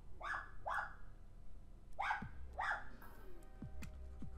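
A dog barking four short times, in two pairs, with faint music underneath.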